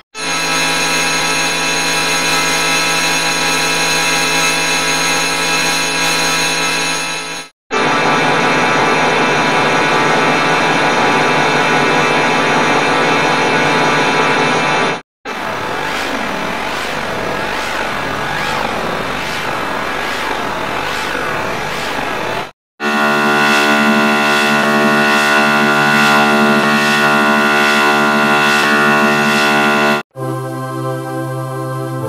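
A sustained, chord-like startup jingle played four times in a row, each copy about seven seconds long and split from the next by a brief cut to silence. Each copy is distorted by a different audio effect. The third copy warbles up and down in pitch.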